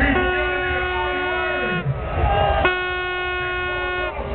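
Two long, steady horn blasts, each about a second and a half, over the deep bass of a street sound system.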